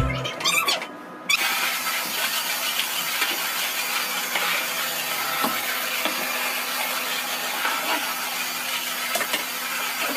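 Backing music with a low beat cuts off about a second in, giving way to a steady, even hiss from a cordless stick vacuum cleaner running.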